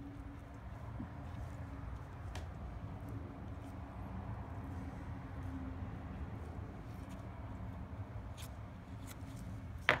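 Steady low background hum with a faint even tone, and a few faint light ticks.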